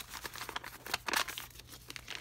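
Paper rustling and crinkling in a string of short, irregular scrapes as the pages of a spiral-bound notebook are handled and turned. It is a little louder about a second in.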